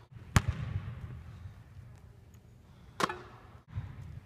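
A basketball bouncing on a hardwood gym floor, each impact a sharp bang with an echoing tail. The loudest comes about a third of a second in, another near three seconds, and a duller one just after it.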